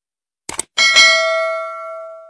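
Two quick mouse-click sound effects, then a bright bell ding that rings and fades over about a second and a half. This is the notification-bell chime of a YouTube subscribe-button animation as the bell icon is clicked.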